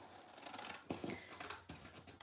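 Scissors cutting through a sheet of paper: a run of several faint, short snips.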